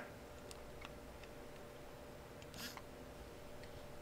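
A few faint, short clicks of a Flipper Zero's directional-pad buttons being pressed, over a faint steady hum.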